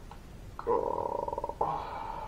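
A man groaning wordlessly into his hands: two drawn-out, rough-edged moans, the first starting about half a second in and lasting about a second, the second beginning just after and running on past the end.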